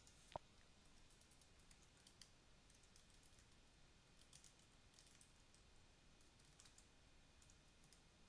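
Faint typing on a computer keyboard: irregular keystrokes, with one louder click just after the start.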